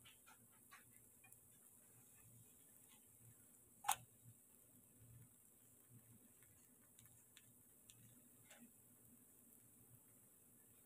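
Near silence, with faint scattered ticks and crackles of a banana paratha frying in oil in a nonstick pan, and one sharp click about four seconds in.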